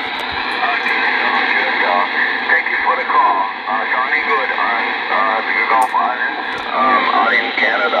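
A distant station's voice coming through the speaker of an RCI-2980WX radio: a long-distance 11-metre skip signal. The voice sounds thin and narrow and rides on a steady bed of static hiss.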